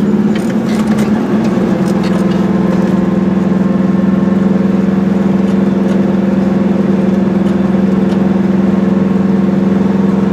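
Goggomobil's small two-stroke twin engine running steadily while driving at a constant speed, heard from inside the cabin together with road noise. Its drone wavers briefly in the first second or two, then holds an even pitch.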